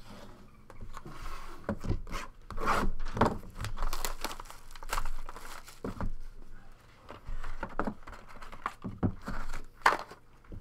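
A cardboard trading-card box and its packaging being handled and opened by hand: rubbing, scraping and crinkling, with scattered clicks and knocks. A sharp knock near the end as a hard plastic card case is set down on the table.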